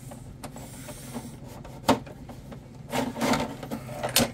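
Hands handling a brass stuffing tube at a workbench: light rubbing and small clicks, with one sharper click about two seconds in and a short rustle near the end.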